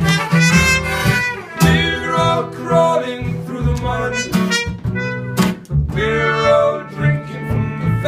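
Live instrumental break from a small acoustic band: a trumpet plays the melody over acoustic guitar and upright double bass.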